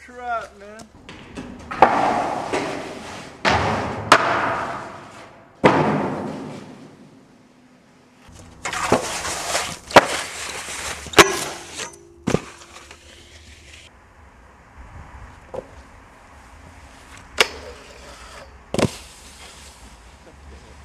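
Snowskates on rails and snow: several long sliding, scraping stretches that fade out, with sharp loud clacks of the board hitting rails and landing, about eight in all, the loudest near the tenth second.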